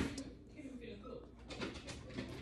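Plastic toy doll being handled: a sharp click at the very start, then faint small clicks and fiddling noises.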